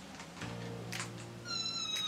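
A cat meows once near the end: a single high call that holds steady, then falls in pitch, over faint background music.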